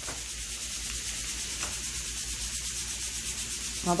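Diced onions and oregano frying in a nonstick pan over a gas burner, sizzling steadily.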